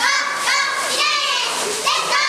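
A group of young girls shouting a cheer chant together in high-pitched voices, about two shouted syllables a second.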